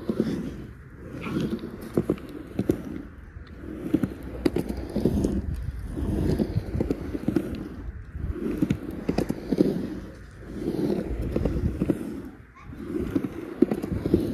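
Skateboard wheels rolling on a concrete bowl, the rumble swelling and fading every second or two as the rider goes up and down the walls, with occasional sharp clicks.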